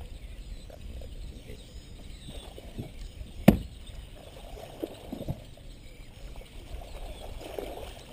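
A single sharp knock on the boat about three and a half seconds in, as the landing net is picked up from the deck, over a low, steady rumble with a few fainter knocks later.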